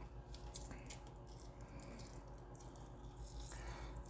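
Faint stirring of lime-juice-wet raw peanuts with a spoon in a bowl: soft scattered clicks and squishing over a low steady hum.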